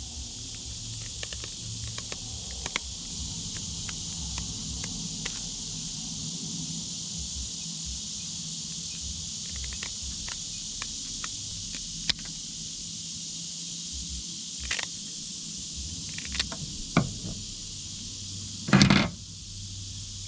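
Kitchen shears snipping the fins off a bluegill: scattered small clicks and snips, with a louder knock near the end, over a steady high-pitched insect drone.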